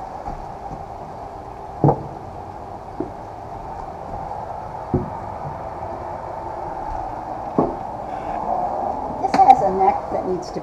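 Guitars being set down and leaned against a wooden house wall: a few single knocks a second or two apart, over a steady hum, with a busier run of clicks and knocks near the end.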